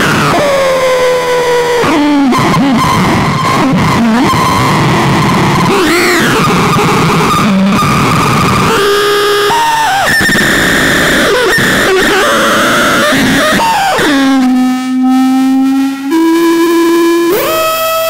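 Behringer Neutron analog synthesizer improvising: a noisy, continuous tone with pitch glides and filter sweeps. About four seconds before the end it settles on a held low note that steps up once.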